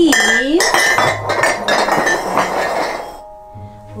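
Ceramic coffee mugs clinking and clattering against one another and the tiled countertop as they are handled and moved, a busy run of knocks lasting about three seconds before it dies down.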